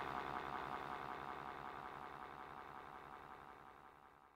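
Electronic track fading out: a rapidly pulsing, buzzing synthesizer texture over a low hum, dying away steadily toward silence.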